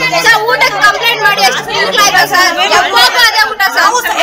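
A group of young women talking over one another in loud, overlapping chatter.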